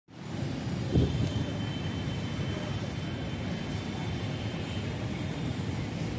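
Steady low rumble of outdoor city background noise, with a single short thump about a second in.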